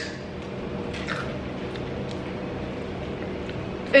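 Faint chewing of small sour candies over a steady low room hum.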